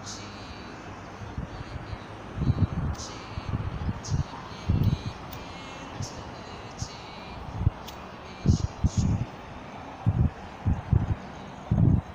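Steady street background noise with irregular, loud low thumps and rumbles close on the microphone of a hand-held phone carried while walking, more frequent in the second half.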